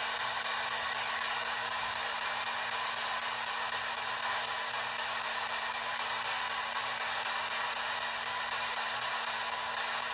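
P-SB7 spirit box scanning through radio frequencies: a steady hiss of static, with a faint low hum under it.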